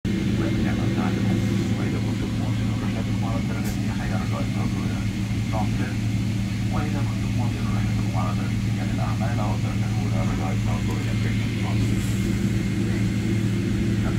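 Steady low drone inside the cabin of a Boeing 777-300ER taxiing on the ground: its GE90 engines at idle and the cabin air, with faint indistinct voices over it.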